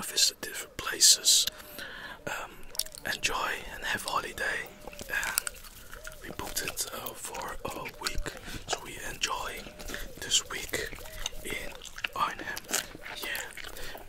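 Bubblegum chewed close to the microphone: wet mouth clicks and smacks, layered with soft whispering.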